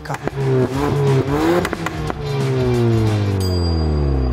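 Ford Focus ST's 2.3-litre turbocharged four-cylinder engine revving: the pitch rises in steps for about the first two seconds, then falls in one long slow glide as the revs drop.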